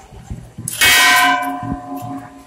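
Hindu temple bell struck once, its ringing tones fading over about a second.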